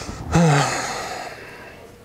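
A single loud, voiced sigh from a person, starting abruptly and fading over about a second.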